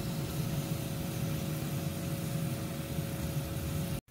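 A Ninja Foodi Grill's fan running with a steady whirring hum and two faint steady tones. The sound cuts off abruptly at the end.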